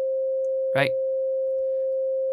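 Native Instruments Massive X software synth holding a single steady sine-wave note at C5, about 523 Hz. The oscillator's harmonic filter is open, so a few faint harmonics sit above the note.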